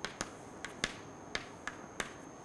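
Faint, sharp light taps, about six at uneven intervals, each one short and clicking.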